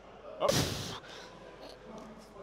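A man's loud, strained grunt, a forceful breathy "oh", about half a second in, from the effort of pressing heavy dumbbells.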